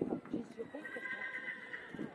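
A horse whinnying: one held call of about a second, over a low murmur of voices.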